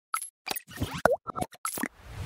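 Cartoon-style pop and plop sound effects from an animated logo intro: about eight short hits in quick, uneven succession. One hit about a second in slides in pitch.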